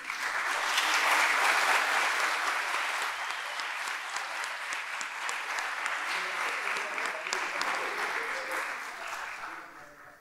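An audience applauding, swelling quickly in the first second or two and gradually dying away near the end.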